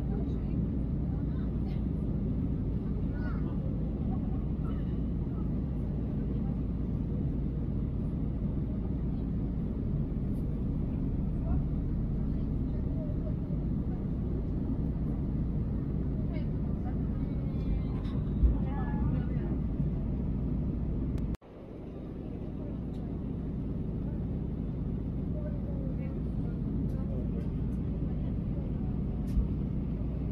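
Steady low rumble inside an airliner cabin during descent: engine and airflow noise heard from a window seat. Near the two-thirds mark the sound cuts out abruptly and swells back over a couple of seconds.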